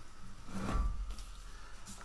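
Faint handling noise on a workbench as gloved hands let go of a metal exhaust pipe and reach across the bench, with a soft low bump about three-quarters of a second in.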